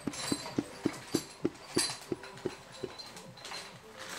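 Electric 220 V hydraulic pump driving a hose crimper: about ten short, regular pulses that slowly spread apart over the first three seconds, then a quieter steady running sound.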